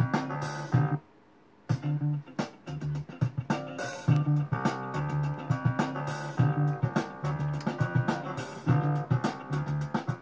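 A DJ deck is playing back a track with guitar, bass and drums, driven by a timecode turntable. The music cuts out for under a second about a second in, then starts again with the same steady bass rhythm.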